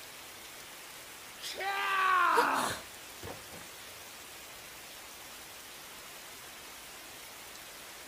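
Steady rain hiss, with one short strained vocal cry about a second and a half in, falling in pitch over about a second.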